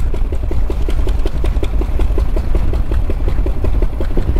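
The Flying Millyard's 5-litre V-twin, built from two cylinders of a Pratt & Whitney Wasp radial aircraft engine, pulling the bike along at low revs. It gives a slow, even beat of firing pulses, about seven a second, that sounds more like a steam engine than a motorcycle.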